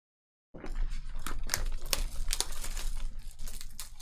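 Crinkling and tearing of the packaging on a sealed Panini Prizm football card box as it is handled and opened. The sound starts about half a second in and continues as a dense crackle with many sharp snaps.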